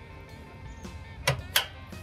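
Steel firebox door of a Workhorse 1957 offset smoker being swung shut, with two sharp metal clicks about a second and a half in, over faint background guitar music.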